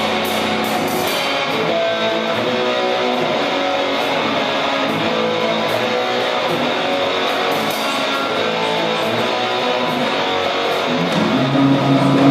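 Live rock band playing an instrumental passage: electric guitar over bass, drum kit and keyboard, with steady cymbal strikes. The music swells louder near the end.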